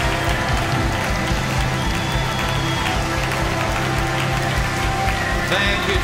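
Live church worship band playing upbeat praise music with a fast, steady beat, with the congregation clapping along.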